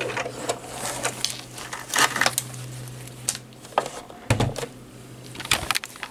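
Light clicks and rustles of fabric and parts being handled at a sewing machine just after a seam is finished, over a low steady hum that stops about four seconds in, followed by a heavier thump.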